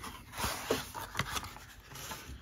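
Clear plastic parts bag crinkling as hands handle it, with a few light taps.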